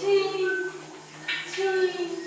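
Several choir voices singing short held notes that step between pitches, with a brief whispered hiss a little past halfway. A low steady tone runs underneath.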